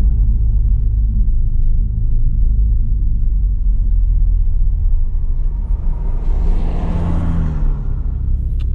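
Inside the cabin of a Toyota Supra MK5 driving slowly: a steady low engine and road rumble. About six seconds in, a rushing sound swells for a couple of seconds and fades.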